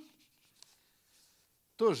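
Faint rustling and scratching of book pages being handled, with a small click about half a second in, during a pause in a man's speech. Speech resumes near the end.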